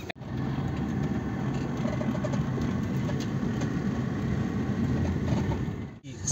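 Steady vehicle engine rumble with road noise, starting abruptly at an edit and fading out just before the end.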